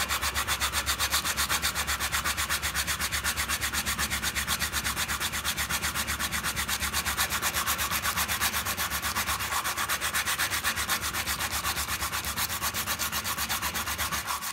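Hand sanding the end grain of a piece of wood held in a vise with 80-grit glass paper wrapped round a sanding block: a fast, even rasping rhythm of back-and-forth strokes, about five a second.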